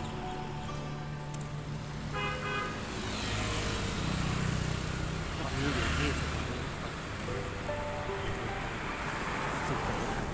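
Background music, with a road vehicle passing close by for a few seconds in the middle: its engine and road noise swell and then fade away.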